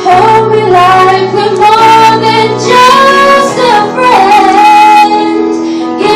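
A young female singer singing a melody into a microphone, holding long notes, over sustained instrumental accompaniment.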